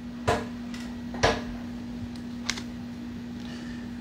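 Steady low hum from an electric guitar rig left idle between playing, with two light knocks about a third of a second and a second and a quarter in, and a fainter tick a little later.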